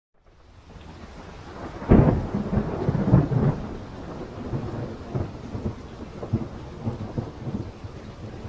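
Rain-and-thunderstorm sound effect: rain fades in, with a loud thunderclap about two seconds in and a second rumble of thunder around three seconds, then steady rain.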